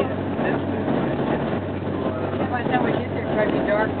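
Steady low drone of a car's engine and tyres heard from inside the cabin at highway speed, with indistinct talking in the second half.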